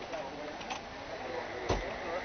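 Indistinct background voices chattering, with one sharp knock near the end.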